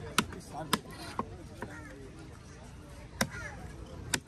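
A cleaver chopping pieces of goliath grouper on a wooden log block: sharp single strikes, four in the first two seconds and one more about three seconds in.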